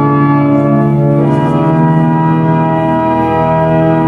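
Organ music: sustained chords, moving to a new chord about a second in.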